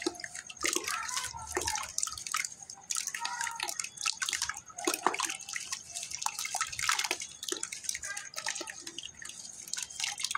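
Hands squeezing and breaking up lumps of red geru clay and sand in a plastic bucket of water: irregular splashing, sloshing and dripping as the clay dissolves.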